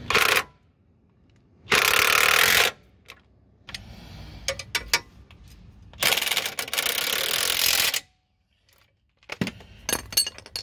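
Impact wrench running in three bursts, tightening the bolts of a Jeep Grand Cherokee WJ's new front lower control arm: a short burst at the start, a burst of about a second a couple of seconds in, and a longer one of about two seconds later on. A few sharp metallic clicks fall between the bursts.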